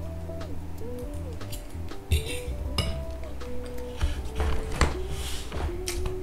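Background music of held notes over a steady low bass, with scattered small clicks and mouth sounds of someone eating pizza.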